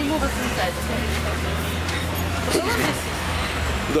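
A motor vehicle engine running steadily, a low hum that cuts off shortly before the end, under faint talking voices.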